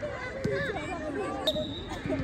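Several girls' voices calling and chattering across a football pitch, with a sharp thump about one and a half seconds in, followed by a brief, steady, high tone.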